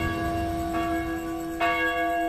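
Church bell struck about once a second, each stroke ringing on over the last.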